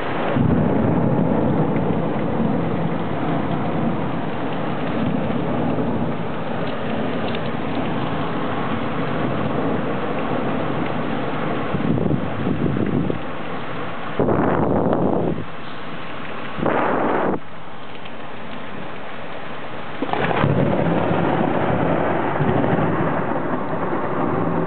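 Thunderstorm: heavy rain falling steadily with rolling thunder. A long rumble begins about half a second in, further loud rumbles come around the middle, and it swells again near the end.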